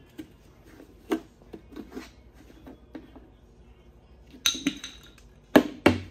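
Plastic pull-out pour spout on a five-gallon pail lid being worked open by hand: scattered clicks and scrapes, a brief squeak about four and a half seconds in, and two sharp snaps near the end.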